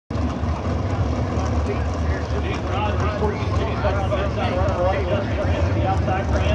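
Indistinct talking over a steady low rumble, with the voice growing clearer a couple of seconds in.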